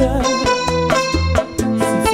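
Live bachata band music: an acoustic-electric guitar picks the melody over a pulsing bass line.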